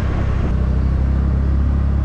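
A TVS Ntorq 125 scooter being ridden at about 20 to 30 km/h: a steady low rumble of engine, tyres and wind on the microphone.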